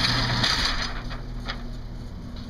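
Steady mechanical hum and noise of an indoor shooting range, dropping in level about half a second in, with a few faint ticks near the middle from the paper target being handled.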